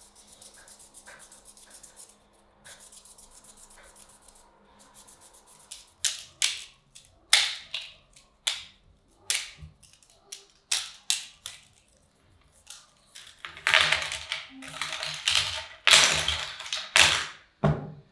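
Homemade PVC fingerboard decks being handled: a rapid run of fine ticks at first, then a series of separate sharp plastic clacks about twice a second as the decks are knocked together. Louder, longer clattering near the end as they are set down.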